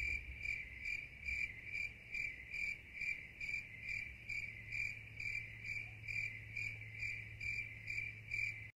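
Cricket chirping in an even rhythm, a little over two chirps a second, over a faint low hum.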